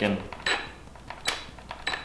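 A few sharp clicks and light rattles from a DeWalt cordless jigsaw being handled and turned over in the hands; the saw's motor is not running.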